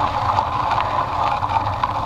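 Steady rushing noise of riding a mountain bike on an asphalt road: wind buffeting the bike camera's microphone over the hum of tyres rolling on the tarmac.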